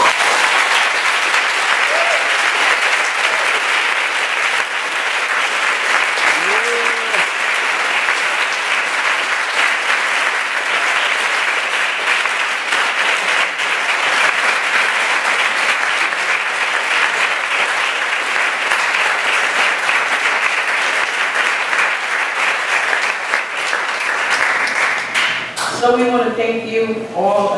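Large audience clapping steadily for about twenty-five seconds, starting all at once and stopping sharply near the end, with a couple of brief cheers from the crowd about two and six seconds in.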